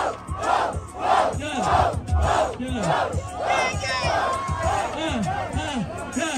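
Street rap-battle crowd shouting and cheering in reaction to a punchline, the shouts coming in a rhythm of roughly two a second.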